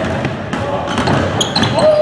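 Basketballs bouncing on a hardwood gym floor during dribbling drills, a run of sharp thuds with reverberation from the hall. There is a short squeak near the end.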